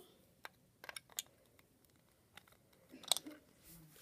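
Faint handling noise: a few scattered small clicks and taps, the loudest a little after three seconds in.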